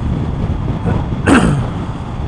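Triumph Tiger motorcycle riding along at road speed: a steady engine and road rumble with wind rushing over the microphone. About a second and a quarter in, a short sound falls quickly in pitch.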